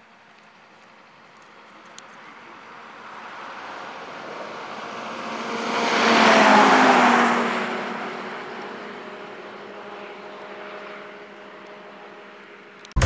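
A motor vehicle passing at speed on a highway: engine and tyre noise swells up, peaks about six and a half seconds in, then fades away.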